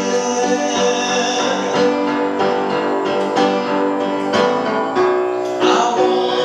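A piano played live in a slow song, a new chord struck every half second to a second, with a man singing over it.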